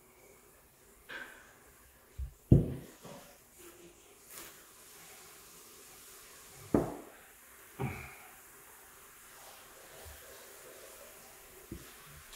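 Handling noise: about eight irregular knocks and thumps of objects being moved and set down on a hard surface, the loudest about two and a half seconds in.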